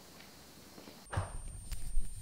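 Hands handling a sheet of packing paper on a tabletop: a few soft taps and rustles, starting a little past halfway after a short near-quiet stretch.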